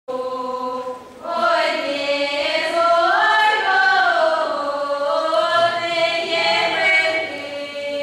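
Children's voices singing unaccompanied in Russian folk style, with long held notes that slide between pitches. There is a brief break about a second in before the song carries on.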